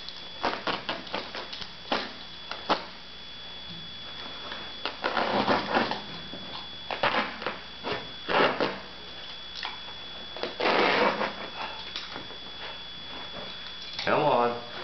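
Utility knife cutting through carpet backing: a run of short clicks and scratches, then several longer scraping strokes of about a second each as the carpet is cut further and pulled back.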